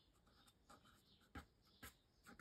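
Faint strokes of a felt-tip marker writing a word on paper, with two slightly louder strokes in the second half.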